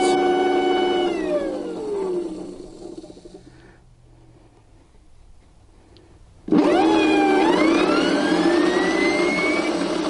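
GE starter-generator's DC motor on a 12 V battery, whining steadily, then winding down in falling pitch about a second in until it stops. At about six and a half seconds it starts again and spins up fast in a long rising whine, running with its field wire disconnected on the slight leftover magnetism of the field shoes (field weakening): high speed with almost no torque.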